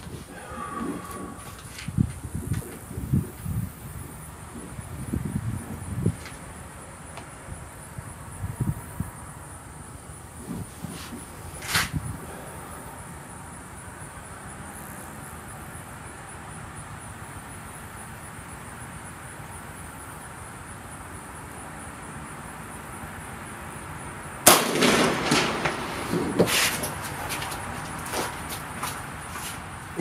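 A modded .25 calibre AirForce Condor SS PCP air rifle firing a single shot, a sharp crack. Near the end comes a louder stretch of irregular clattering and movement noise as the shooter leaves the bench.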